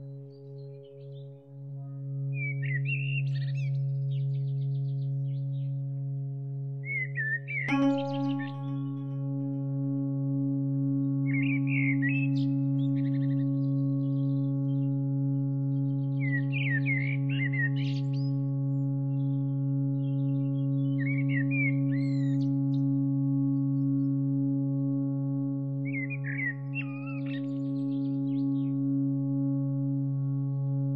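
Ambient meditation music: a steady low drone of held tones, with a brighter tone struck about eight seconds in. Short chirping birdsong phrases come every four to five seconds over it.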